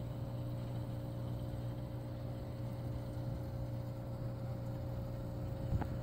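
A steady, low electric motor hum with a faint higher tone over it and a light hiss, unchanging throughout; a faint click near the end.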